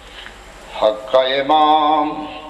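A man chanting a religious recitation in a drawn-out, melodic voice: after a short pause he comes in just under a second in and holds one long note near the end.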